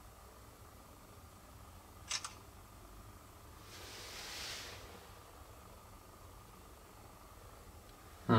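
Samsung Galaxy smartphone's camera shutter sound, a quick double click about two seconds in, as a photo is taken. A soft brushing noise follows about four seconds in, over quiet room tone.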